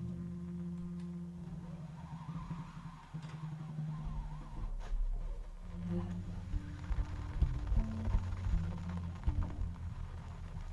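Slow jazz ballad played live by saxophone, upright bass and drums, the upright bass's held low notes the loudest part, changing every second or two under a soft saxophone line and a few light cymbal or drum touches.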